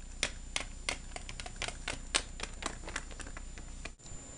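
Small plastic toy figurines tapped along a glass tabletop to make them walk, a string of light, irregular clicks about three a second.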